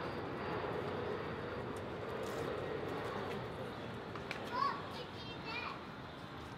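Steady background noise with a faint hum. Unintelligible distant voices come through, with a few short, high, gliding sounds from about four and a half seconds in and again near the end.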